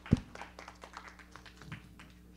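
Scattered hand clapping from a small audience, thinning out, with a single loud low thump shortly after the start.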